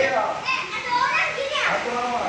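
Children's voices calling out and chattering, the pitch swinging up and down.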